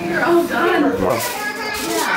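Voices talking, children's voices among them.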